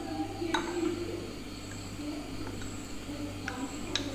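A plastic spoon clinking against a glass bowl a few times while stirring a mixture, with a steady low hum underneath.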